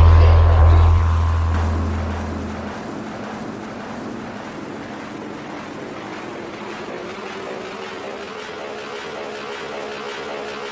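A hip-hop track's deep bass notes die away over the first two or three seconds, leaving a steady noisy rumble with a low hum that slowly rises in pitch.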